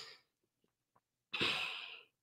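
A man sighs: one breathy exhale beginning a little past halfway, after a near-silent pause.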